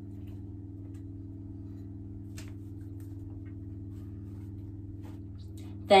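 A steady low electrical hum, with a few faint light taps as kitchen things are handled.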